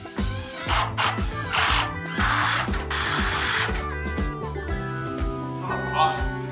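Cordless drill driving screws into 2x4 lumber in three short bursts, the longest about a second and a half, over background music.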